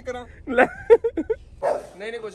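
A man laughing in short, high-pitched laughs without words, followed near the end by a brief louder noise as a different scene begins.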